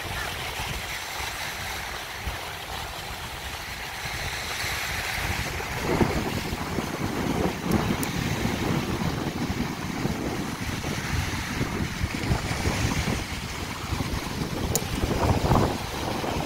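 Sea surf washing steadily, with wind buffeting the microphone in low gusts from about six seconds in.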